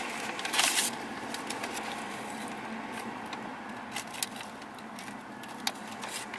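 Paper food bag crinkling and rustling as it is opened and a piece of fried chicken is pulled out, with a louder rustle about half a second in and scattered light crackles after.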